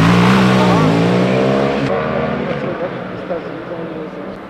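Police motorcycle engines running loud as the bikes ride off, with a brief dip in pitch about a second in, then fading over the second half.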